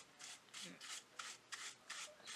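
Dry paintbrush bristles brushing dust off a Rivarossi Boston & Albany Hudson model steam locomotive: faint, quick swishing strokes, about three a second.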